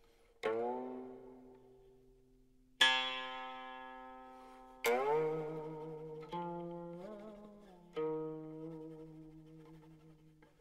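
Slow, sparse solo music on a plucked string instrument: about five single notes a second or two apart, each ringing out and fading, some sliding or wavering in pitch after the pluck.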